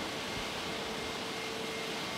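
Steady machinery noise of a plastics sorting plant hall: an even rushing hiss with a faint steady hum.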